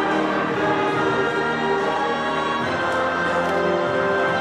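Music with a choir singing in held, sustained notes.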